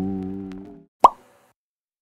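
Background music fading out, then a single short plop sound effect about a second in, louder than the music.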